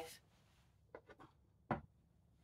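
A wooden chess piece, the white bishop, lifted off a wooden board with a few faint clicks and set down with a single knock near the end.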